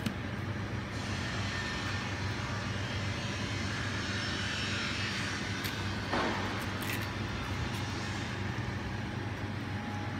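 A steady low mechanical hum with an even background noise, from a machine that cannot be identified, with a few faint soft rustles as raw turkey necks are lifted out of a plastic-wrapped foam tray.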